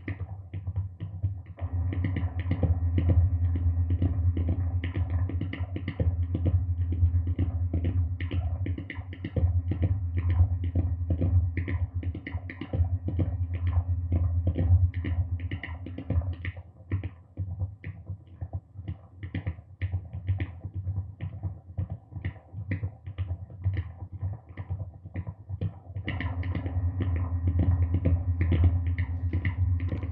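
Self-generating noise drone from a chain of guitar effects pedals through a Marshall amp: a dense, irregular crackle of rapid clicks over a steady low hum. The low hum drops away for several seconds in the middle, leaving mostly the clicking, then comes back near the end.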